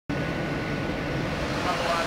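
Steady outdoor rumble and noise, with faint voices coming in near the end.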